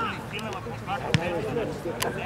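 A football kicked once about a second in, a single sharp thud, with voices of players and onlookers calling across the pitch.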